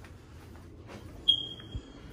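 A single high-pitched electronic beep that tails off, followed shortly after by a dull low thump. Soft footsteps on carpet run underneath.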